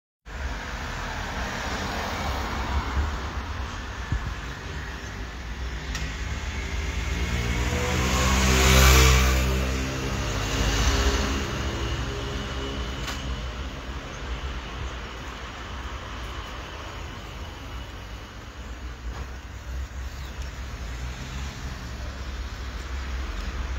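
Street traffic: a car drives past, its engine sound swelling to the loudest point about nine seconds in and then fading. A steady low rumble of traffic runs underneath.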